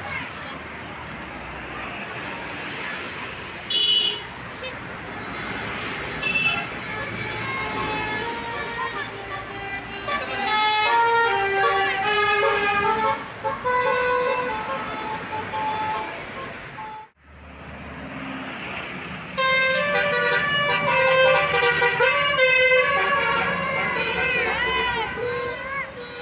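Tour buses' musical air horns (basuri or "telolet" horns) playing stepped multi-note tunes as the buses pass, over road traffic noise. The tunes come in two long spells, from about ten seconds in and again near the end, with a short loud burst about four seconds in.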